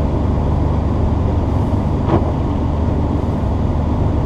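Steady low drone of a Datsun 810 Maxima's engine and road noise, heard from inside the cabin as the car rolls slowly along. There is a brief short squeak about halfway through.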